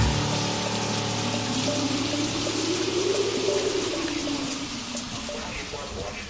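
Steady rain, an even hiss of falling water, with a low sound that swells and fades in the middle and faint steady tones underneath.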